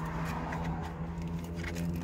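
Steady low hum inside a car cabin, with faint rustling and small clicks of plastic food packaging being handled.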